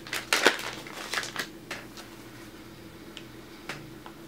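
Clear plastic bag of wax melts crinkling as it is handled: a cluster of sharp crackles in the first second and a half, then quieter, with one more crackle near the end.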